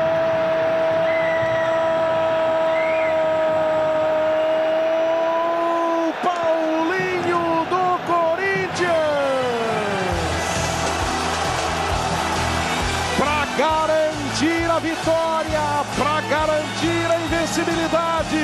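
A football commentator holds a long, drawn-out goal shout for about six seconds, then shouts excitedly. About ten seconds in, music with a steady low beat comes in.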